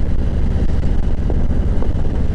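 Harley-Davidson Ultra's Milwaukee-Eight V-twin engine running steadily under way, with road and wind noise from the moving motorcycle.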